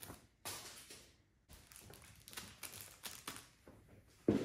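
Faint rustling of plastic and a few light taps, scattered and quiet, as a mask sealed in a plastic bag lands on a pile of clothes on a plastic-sheeted table and the plastic is brushed.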